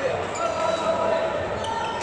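Echoing sports-hall ambience with several badminton games in play: a background of voices from players and onlookers, with the occasional sharp smack of a racket hitting a shuttlecock.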